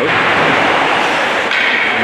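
Steady, loud noise of an ice hockey game in a rink, with no single sound standing out.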